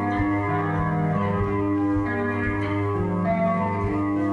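Live rock band playing an instrumental passage: electric guitar holding sustained chords over bass guitar and drums, with no vocals.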